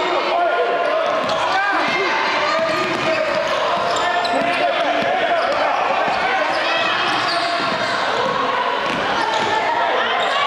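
Basketball dribbled on a hardwood gym court during a game, under steady, overlapping shouts and chatter from players, coaches and spectators, with the echo of a large gym hall.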